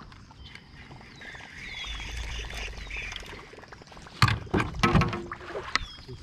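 A canoe paddle being picked up and knocking several times against the canoe's hull, a run of sharp knocks about four to five seconds in.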